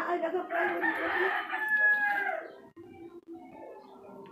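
A rooster crowing once, a single long call lasting about two and a half seconds that dips in pitch as it ends.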